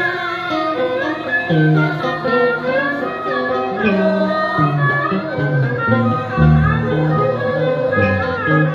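Vietnamese funeral ritual music: plucked and bowed strings with a singing voice, the melody bending and sliding between notes over a moving bass line.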